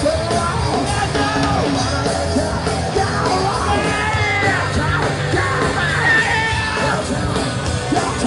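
A punk band playing loud live: electric guitar, bass and drums with vocals over them, recorded from among the audience in a small club.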